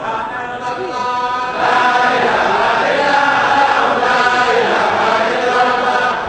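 Many voices chanting dhikr together, swelling noticeably louder about a second and a half in and staying at that level until near the end.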